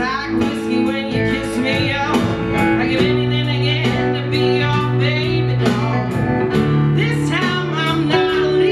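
A live rock band playing with acoustic and electric guitars, bass guitar, keyboard and drums, with steady drum hits under sustained chords. The chord and bass note change about three seconds in.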